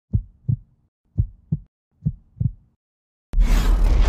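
Heartbeat sound effect: three double thumps, lub-dub, about a second apart. A moment of silence follows, then a loud, deep rumbling boom starts suddenly near the end.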